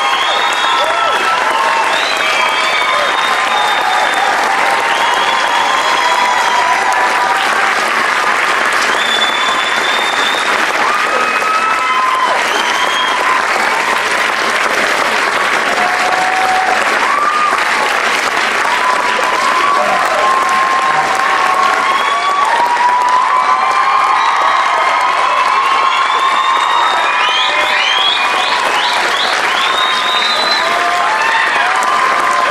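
Loud, sustained applause from a concert audience and the performers on stage, with scattered cheers, whistles and voices calling out over it.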